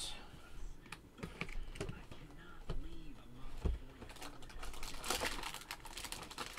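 A cardboard trading-card box being slit open with a small knife and handled: irregular clicks, taps and scrapes, busiest about five seconds in.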